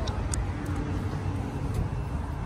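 Steady low rumble of parking-lot traffic noise, with a few faint ticks.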